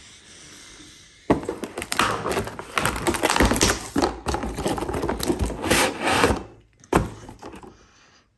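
Cardboard of a wine advent calendar tearing and scraping as a perforated door is pushed open and a small wine bottle is pulled out of its slot: a dense crackling rustle for about five seconds, then a single sharp knock about a second before the end.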